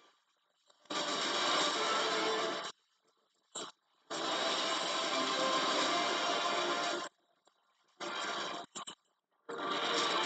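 Film-trailer soundtrack from a screen: loud bursts of dense music and sound effects, one of about two seconds, a longer one of about three seconds, then two shorter ones near the end, each cutting off abruptly into silence.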